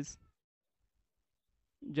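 A man's voice trailing off at the very start, then about a second and a half of dead silence, then his voice starting again just before the end.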